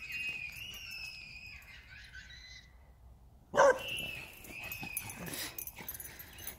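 Children screaming in long, high-pitched shrieks, and a dog barking once, loudly, a little past halfway.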